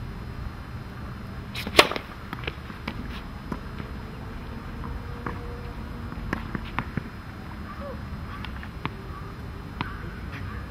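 A tennis ball struck hard by a racket: one sharp, ringing crack about two seconds in, followed by a scatter of much fainter taps and ticks, over a steady low rumble of wind on the microphone.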